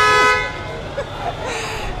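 A horn sounding a steady two-tone blast that cuts off about a third of a second in, followed by quieter market and street background.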